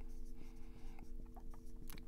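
Dry-erase marker writing on a whiteboard: short, faint strokes and taps, over a low steady hum.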